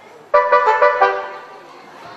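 A short brass riff, trumpet-like: a few quick notes starting about a third of a second in and dying away by the middle.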